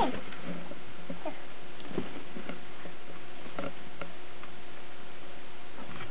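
Rabbits moving about and nibbling in the straw of a hutch: faint scattered rustles and clicks over a steady low hum.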